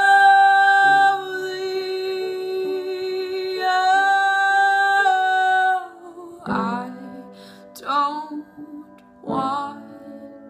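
A young woman singing a slow ballad. She holds one long note for about six seconds, and it swells again midway. Then come three short sung phrases about a second and a half apart.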